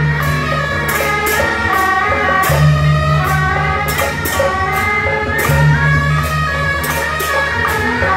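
Beiguan ensemble playing: trumpets carry a held melody over a drum, a large gong and hand cymbals, whose strikes punctuate the music about once a second.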